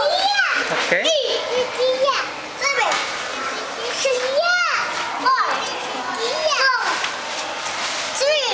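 A young child's high-pitched voice calling out in short rising-and-falling phrases, roughly one a second, with other children's voices around it.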